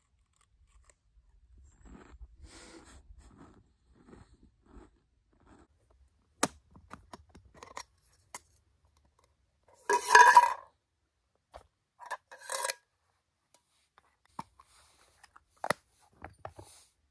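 Handling of small backpacking cook gear: scattered light clicks and clinks, with a louder scrape about ten seconds in and a shorter one about two and a half seconds later.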